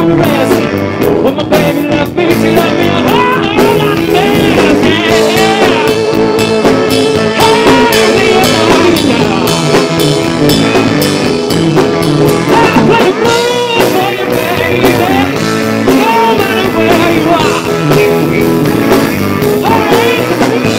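Live blues-rock band playing a passage without lyrics: an electric guitar leads with bent and wavering notes over bass and drums.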